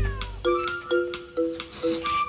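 Light background music with short notes on a steady beat, and a cat's brief falling meow right at the start.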